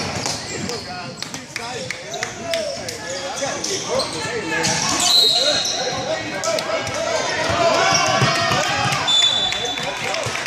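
Basketball game sounds in a gym: the ball bouncing on the hardwood court under the shouts of players and spectators, echoing in the large hall. Two short, shrill high tones sound, about five and nine seconds in.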